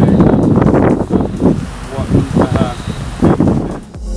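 People talking, with wind rumbling on the microphone.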